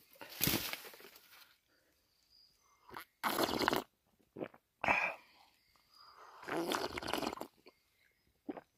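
A man slurping water from a hollow scooped in a cut banana stem, in several noisy sucks. The longest sucks come at the start and near the end, with a short one in between.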